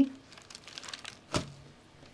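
Baking paper crinkling faintly as hands move over a freshly baked loaf in a metal baking tray, with one sharp knock a little over a second in.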